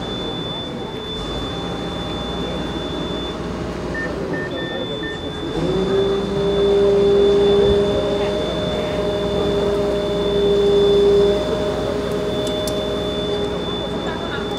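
Fire truck's aerial ladder in operation: the truck's engine and hydraulics run with a steady high whine, and a few short beeps sound about four seconds in. About five and a half seconds in, the engine note rises and holds steady and louder for about six seconds while the ladder moves, then drops back.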